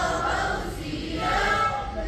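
A group of schoolgirls singing in unison into a microphone; a held note fades about a second in and the next sung line begins.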